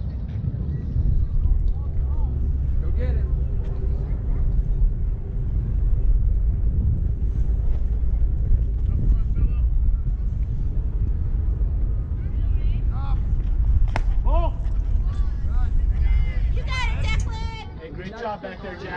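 Wind buffeting the camera microphone, a heavy uneven rumble that eases off near the end. One sharp knock comes about two-thirds of the way through, and people's voices call out over the last few seconds.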